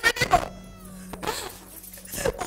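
A woman wailing and sobbing in grief, her voice rising and breaking in wavering cries, with one falling cry about half a second in.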